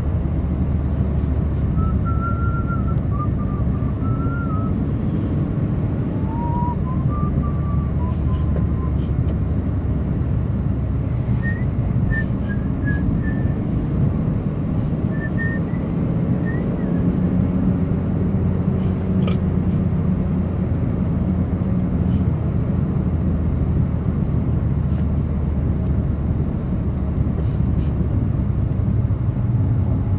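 Steady low road and engine rumble of a car driving, heard from inside the cabin.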